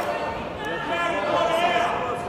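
Indistinct speech from the hall's public-address announcer, echoing through a large sports hall.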